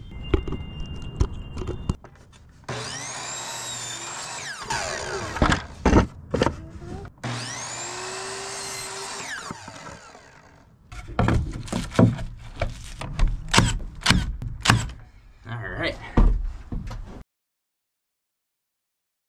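Electric miter saw making two crosscuts through cedar boards, its motor whine rising as it spins up and falling away after each cut. This is followed by a run of sharp snaps from a staple gun tacking the cut boards in place.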